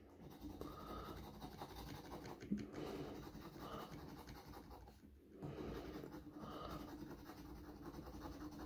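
Faint scraping of an Australian kangaroo dollar coin's edge across a paper lottery scratch ticket, rubbing off the scratch-off coating. It breaks off briefly about five seconds in, then carries on.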